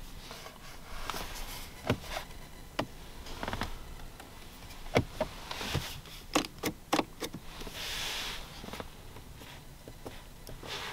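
Interior controls of a 2022 Lexus ES 350 being pressed and worked by hand to check for rattles: sharp plastic clicks and knocks from the center-stack buttons and the gear shift knob, several in quick succession about halfway through, then a brief rubbing sound near the end.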